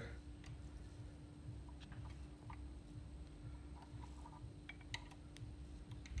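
Faint, scattered metallic clicks of an Allen key and bolts being worked on a motor mounting plate, over a steady low hum.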